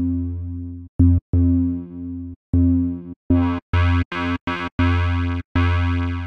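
Serum synth bass patch built on the Trilobite 1 wavetable, through a 12 dB low-pass filter and asymmetric distortion, playing a choppy pattern of about ten short notes, each fading away and cut off by brief silences. About three seconds in the notes turn much brighter and harsher as the distortion's wet mix is raised.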